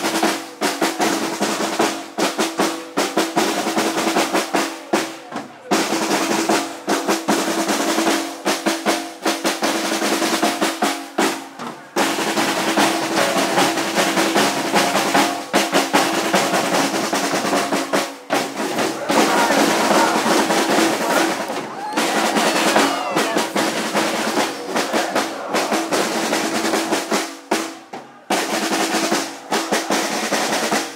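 Marching snare drums played by a drum line in a fast, continuous rolling rhythm, with a few short breaks. Crowd voices sound beneath the drumming.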